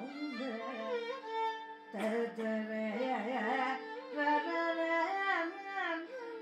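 Carnatic music in raga Kharaharapriya: a violin plays heavily ornamented, sliding phrases over a steady drone, with a sharp percussive stroke about two seconds in.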